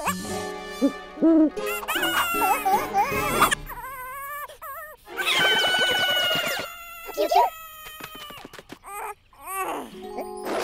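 Cartoon soundtrack: high, cooing character voices babbling without real words, mixed with sound effects and light music, with several short loud moments.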